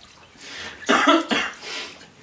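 A short burst of laughter: a few sharp, breathy bursts about a second in, loudest in the middle, then trailing off in a breath.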